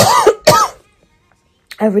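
A woman coughing twice into her fist, two short, loud coughs in the first second, followed by a pause.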